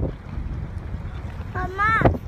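Wind buffeting the microphone over the low rumble of a boat on open water. Near the end comes a brief high-pitched, voice-like cry that rises in pitch.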